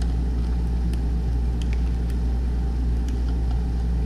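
Steady low-pitched hum with a background hiss, unchanging throughout, and a few faint clicks.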